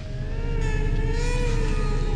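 A low, steady rumbling drone with faint wavering tones above it: an ominous horror-style sound effect.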